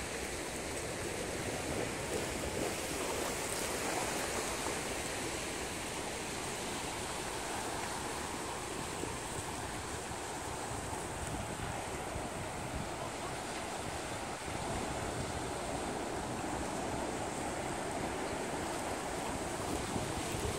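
Steady rushing of choppy ocean water, with wind.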